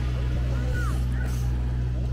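Pool massage water-jet pump running with a steady low hum.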